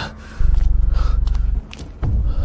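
A wounded man's strained, gasping breaths over a deep, pulsing rumble that comes in about half a second in and drops away shortly before the end.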